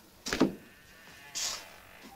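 A door pushed shut with a single thud about a third of a second in, then a brief high hiss about a second later.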